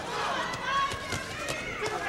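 Ringside crowd with several voices shouting over one another, broken by a few short, sharp thuds.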